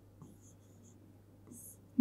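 Faint, high-pitched scratches of a pen writing on an interactive whiteboard screen: several short strokes as letters are drawn.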